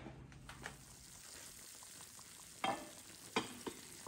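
Faint sizzling and crackling from a hot casserole of au gratin potatoes fresh out of the oven, with a few soft clicks.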